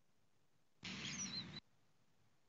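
A brief chirp-like sound under a second long: a high whistle that glides down, over a short patch of background noise that switches on and off abruptly.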